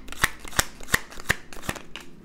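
A tarot deck being shuffled by hand, with five sharp snaps of card against card at about three a second.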